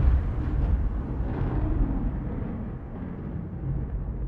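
Deep cinematic boom from the trailer-style soundtrack dying away in a low rumble, fading steadily as the intro ends.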